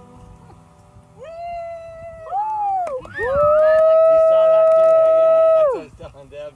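A dog howling: a short howl about a second in, a brief rising-and-falling one, then one long, loud, steady howl that falls off in pitch at its end.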